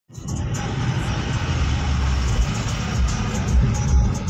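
Steady road and engine noise inside a moving car, with music playing over it.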